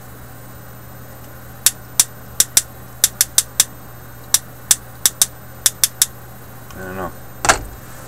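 Small plastic Morse code practice key from a Radio Shack Science Fair Digital Logic Lab kit tapped by hand: about fifteen sharp, irregularly spaced mechanical clicks starting nearly two seconds in, with no beep tone. A single louder thump follows near the end.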